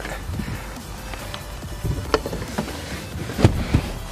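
Clicks and knocks from the rear seatback of an Infiniti G37 coupe as its release lever lets it go and it folds forward, the loudest knock about three and a half seconds in, over background music.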